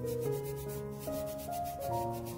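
Cotton-gloved hands rubbing and scrubbing the sticky skin of a quince in quick back-and-forth strokes, over background music of held notes.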